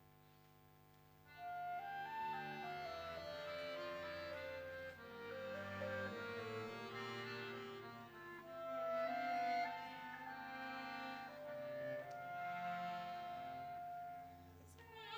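A small live instrumental ensemble starts playing about a second in: a sustained melody line over lower bowed-string parts.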